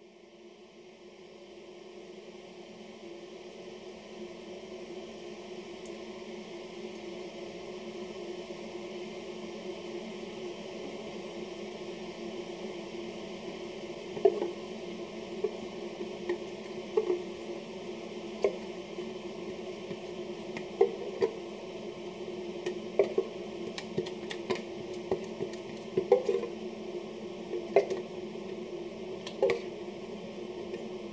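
Kettle heating water: a steady hum that swells from near silence over the first several seconds and then holds. From about halfway, a metal spoon clinks and scrapes against the inside of a thin steel malt-extract tin as the thick extract is scraped out.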